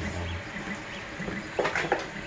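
Faint small chirps repeating over a steady background hiss, with a short low hum at the start and a brief murmured voice near the end.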